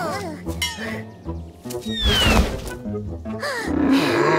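Cartoon soundtrack: background music with comic sound effects, including bouncing up-and-down pitch glides near the start and a falling whistle about two seconds in.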